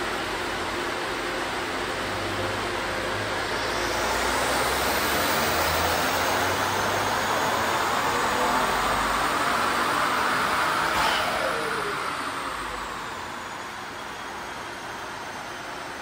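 Ford Explorer ST's twin-turbo 3.0-litre EcoBoost V6 making a wide-open-throttle pull on a chassis dynamometer: a dense rushing roar with a whine that climbs in pitch for several seconds, then falls away about eleven seconds in as the throttle is lifted and the rollers wind down.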